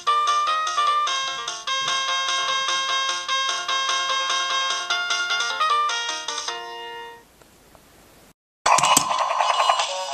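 A VTech toy police car plays an electronic beeping melody through its small speaker. The tune stops about six and a half seconds in and fades out. After a brief dead gap, a loud burst of a different sound starts near the end.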